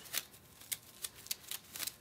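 Dry, papery snake shed skin crinkling as hands pull it apart and drop it onto the substrate: a scatter of light, irregular crackles.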